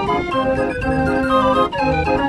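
A 52-key Verbeeck Dutch street organ (draaiorgel) playing a march on its pipes, with full chords, a moving melody and a bass line.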